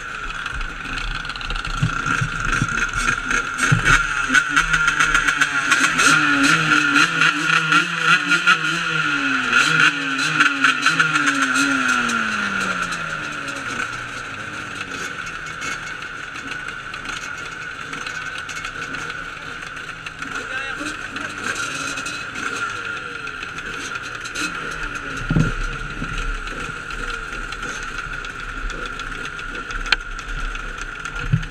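A crowd of dirt bikes and quads, mostly two-stroke Yamaha YZ125s, running close by: engines are revved up and down over and over through the first dozen seconds, then settle to a steadier idle.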